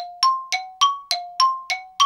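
A two-note bell chime struck over and over, alternating high and low about three times a second, each strike ringing briefly and dying away: an edited-in transition sound effect.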